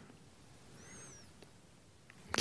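Near silence: faint room tone, with one faint, short high chirp a little under a second in that rises and then falls in pitch.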